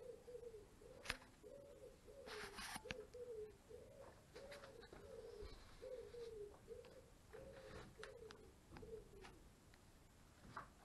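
A pigeon cooing faintly, a long, even run of repeated low coos that stops about nine seconds in. A few light clicks and a brief rustle come in among the coos.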